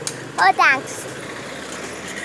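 A child's brief high-pitched call about half a second in, rising and falling in pitch, over a steady low hum.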